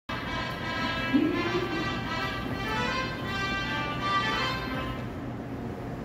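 Seoul Metro platform train-approach melody played over the station speakers, a short tune signalling an incoming train, fading out near the end.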